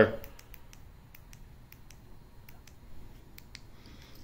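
Faint light clicks, about a dozen and irregularly spaced, from the small buttons of a handheld LED light remote being pressed.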